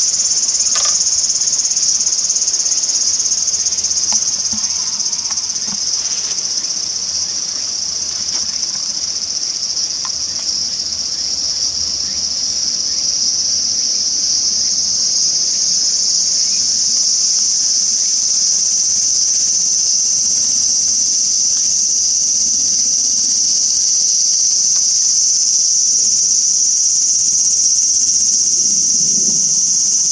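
Summer insects sounding together in one steady, unbroken, high-pitched drone that eases slightly in the middle and grows louder again toward the end.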